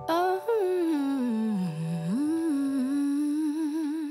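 Background music: a wordless vocal melody, hummed or crooned, gliding slowly and wavering over sustained chords.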